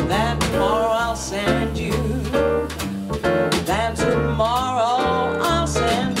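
Live jazz quartet playing: a woman sings over electric piano, double bass and drums, the bass moving through low notes under her wavering sung line.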